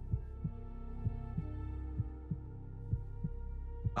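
Slow heartbeat sound effect: soft thumps in pairs, about one beat a second, over a low steady drone from the film's tense underscore.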